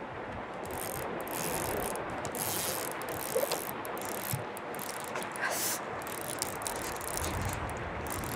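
Fly reel's click-and-pawl drag ratcheting in an uneven run of rapid clicks as a hooked Atlantic salmon is played on the line.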